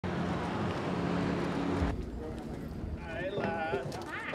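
A motorboat's engine running steadily, with the hiss of wind and water, cutting off abruptly about two seconds in. After a short gap, people's voices chatter.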